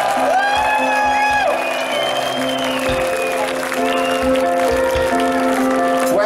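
Live rock band playing: drums thumping under sustained guitar chords and held notes, with the audience clapping along.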